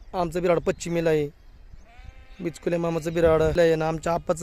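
Sheep in a large flock bleating: several short bleats in the first second, then a long, wavering bleat from about two and a half seconds in.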